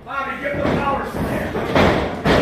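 Shouting voices, then about two seconds in a single loud thud of a wrestler's body crashing into the corner of the wrestling ring.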